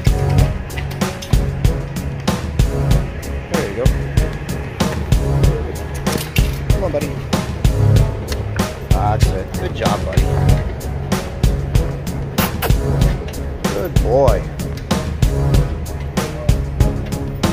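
Background music with a steady beat, heavy bass and vocals.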